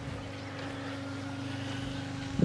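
An engine running at a steady pitch: a low, even hum with a fast regular pulse.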